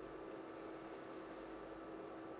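Faint room tone: a steady hum with a light hiss and no distinct events.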